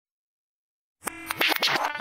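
Silence for about the first second, then hip-hop turntable scratching: a record worked back and forth under the needle in quick strokes that slide up and down in pitch.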